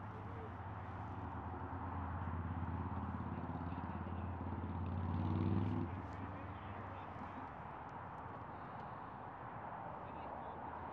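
Low engine hum that grows louder for about five seconds and then stops suddenly, over a steady outdoor hiss.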